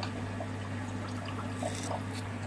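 Steady low hum with a faint trickle of water: aquarium filtration equipment running.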